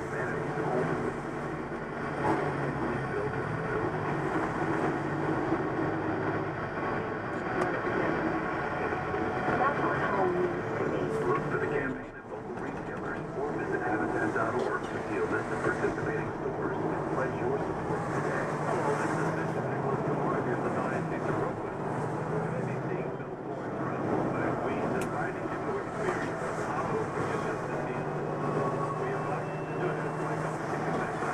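Steady engine and wet-road tyre noise heard inside a truck cab, with indistinct radio talk running underneath.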